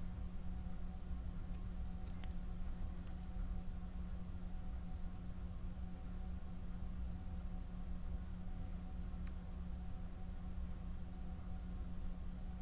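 Quiet room tone: a steady low hum, with a couple of faint clicks about two and three seconds in.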